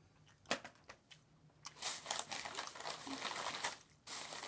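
Plastic snack packaging crinkling as it is handled, a dense run of crackling that starts a little under two seconds in and stops just before the end, after a couple of faint clicks.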